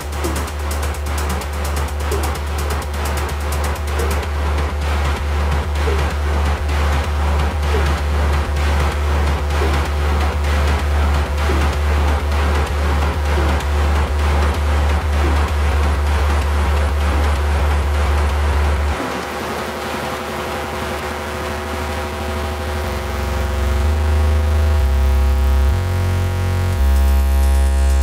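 Peak-time techno: a steady four-on-the-floor kick drum at about two beats a second under layered synth tones. About two-thirds of the way through the kick drops out for a short breakdown, and a bass line builds back louder near the end.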